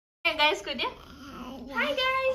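A brief moment of dead silence at an edit, then a child's high-pitched voice squealing and chattering without clear words.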